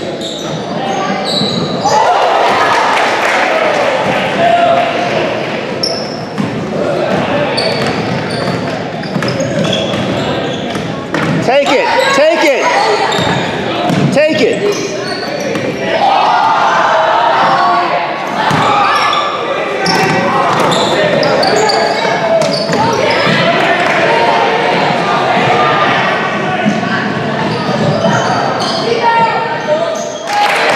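Basketball being dribbled on a hardwood gym floor during play, under a steady din of spectators' and players' voices and shouts, echoing in a large gymnasium.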